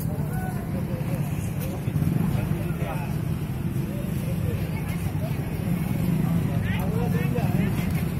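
Several people talking in snatches over a steady low rumble.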